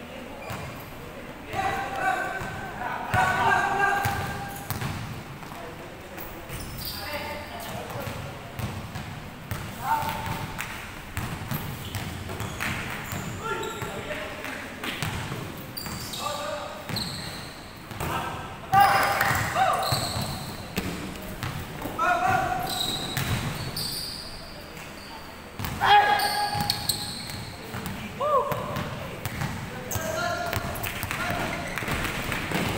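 Basketball dribbled and bouncing on a hardwood gym floor during a game, with repeated sharp impacts ringing in a large hall and players calling out to each other.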